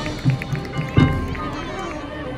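Marching band playing: held wind and mallet-percussion tones over repeated drum hits, with a strong accent about a second in, then softer.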